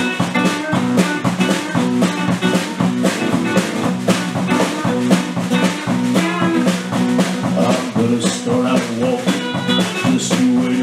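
A live band playing a country song: a drum kit keeping a steady beat under acoustic and electric guitars.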